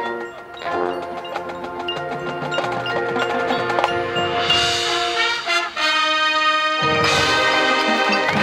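High school marching band playing its field show: front-ensemble mallet percussion and chimes ringing over sustained brass chords. The music builds, breaks off for a moment just before six seconds in, then returns as a louder full-band chord, with low brass and drums joining about a second later.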